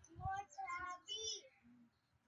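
A child's high-pitched voice, faint and sing-song, for about a second, starting just after a soft low thump.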